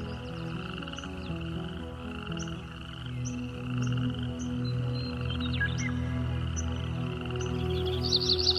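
A chorus of frogs croaking in pulsing trills, laid over slow, soft music with long held low notes, and a few short high bird chirps scattered through.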